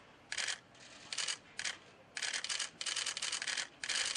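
About half a dozen short bursts of rapid, high clicking, coming in quick succession with brief gaps between them.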